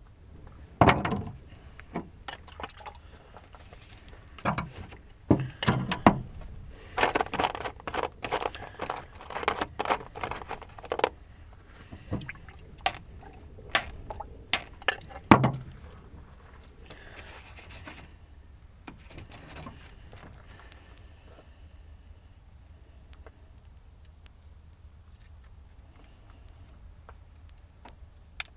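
Knocks, clicks and scrapes of painting materials being handled on a worktop: paint tubes and pastel sticks picked up and set down, in quick bursts through the first fifteen seconds or so. After that comes fainter scratching as a blue pastel stick is worked on sketchbook paper.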